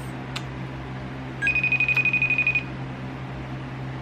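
Smartphone ringing tone for an outgoing call, heard through the phone's speaker: one high warbling tone lasting about a second, over a low steady hum.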